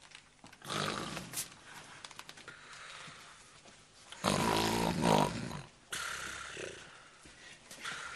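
A woman snoring loudly in her sleep. The loudest snore, a long low rasp lasting over a second, comes about four seconds in, with weaker breaths before and after it.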